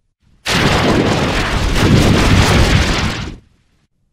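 A loud, harsh blast of noise like an explosion, starting about half a second in and lasting about three seconds before cutting off, with no tune or pitched notes in it: a heavily processed sound effect.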